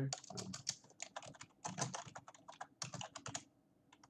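Computer keyboard being typed on: a quick run of keystrokes that stops about three and a half seconds in.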